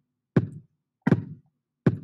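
Software drum-machine loop playing at 80 beats per minute: three single drum hits, one on each beat, about three-quarters of a second apart.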